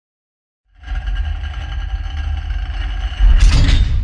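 Sound-designed intro effect for a steel vault-door logo animation: after a short silence, a low rumble with faint high held tones, swelling into a loud whooshing hit about three and a half seconds in.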